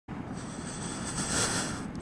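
Steady rushing wind and road noise on a moving Zero SR/S electric motorcycle, with no engine sound under it. It swells slightly about a second and a half in.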